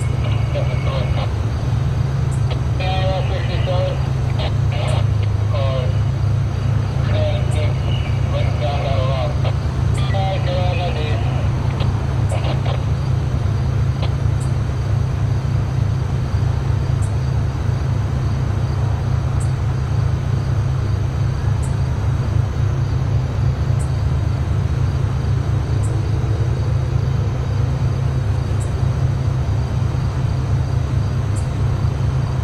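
Diesel locomotive idling, with a steady low engine drone.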